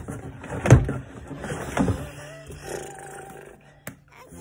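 Rustling and knocking of a cardboard box and the packaging inside it as a plastic product canister is lifted out, with two louder knocks, one under a second in and one near the two-second mark.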